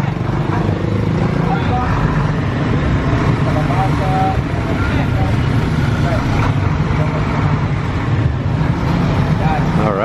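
Large flatbed truck's engine running loudly and steadily close by as it pulls out into the road, with motorbikes passing in the traffic.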